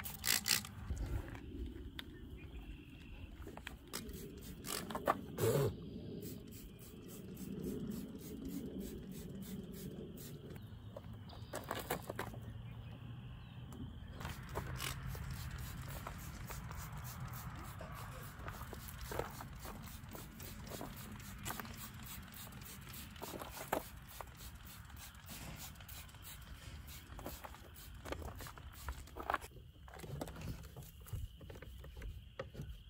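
Microfibre towel rubbing and scrubbing over a car's painted body panels during a waterless wash, with scattered handling clicks throughout and a few louder short noises in the first half.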